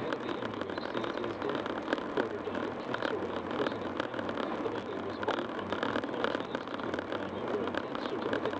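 Steady road and engine noise of a car cruising at highway speed, heard from inside the cabin.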